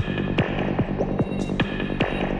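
Psytrance music: a driving kick drum about two and a half beats a second, each hit dropping in pitch, with a rolling bass between the kicks and a sustained high synth line over the top.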